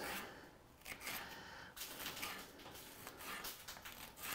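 Faint, repeated strokes of a sharp Cutco kitchen knife slicing a red bell pepper into thin strips on a plastic cutting board.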